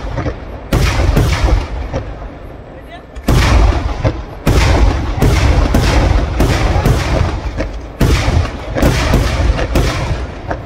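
Fireworks (vedikkettu) exploding: a rapid run of loud bangs, about a dozen, each trailing a rumbling echo. There is a short lull about two seconds in before the bangs resume in quick succession.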